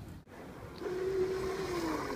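A small electric ride-on scooter's motor whining at a steady pitch that drops near the end, over a light rushing noise.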